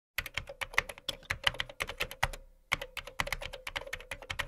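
Computer keyboard typing: a rapid run of key clicks with a short pause about two and a half seconds in.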